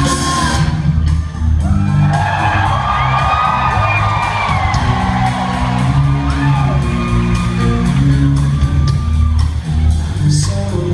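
Live rock band playing loudly between sung lines: steady bass and drums under electric guitar with long sliding notes, heard from the audience in a large hall.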